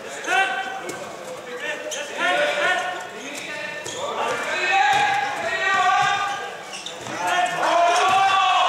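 Handball being played in a sports hall: the ball bouncing on the court floor among repeated high-pitched squeals and voices, echoing in the large hall.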